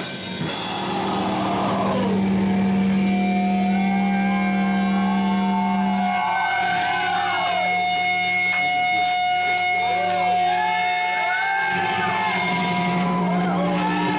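Live heavy rock band with electric guitars sustaining held notes and wavering, bending feedback-like tones, the drums mostly out; the held low note changes about halfway through.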